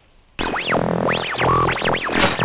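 Electronic transition sound effect: after a brief hush, about half a second in, a burst of synthesized swooping tones rising and falling in pitch over a hiss of static.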